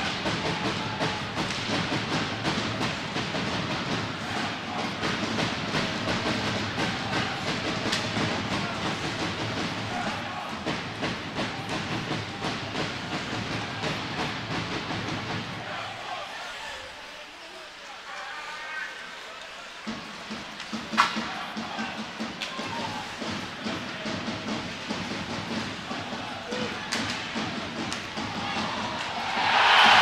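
Ice hockey arena sound: steady crowd noise with the clack of sticks and puck on the ice, dipping quieter for a few seconds, with a single sharp crack of the puck about two-thirds through. Near the end the crowd breaks into loud cheering as a goal is scored.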